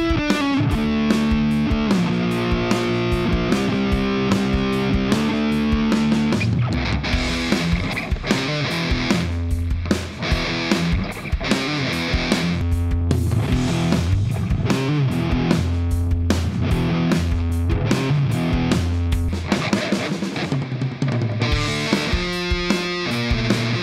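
High-gain distorted electric guitar, a PRS SE played on its bridge humbucker, first through the Guitar Rig 6 Van 51 amp plugin and then through an all-valve EVH 5150III 50-watt amp with 6L6 power tubes on its high-gain channel. Held notes and chords give way about six seconds in to lower, faster picked riffs.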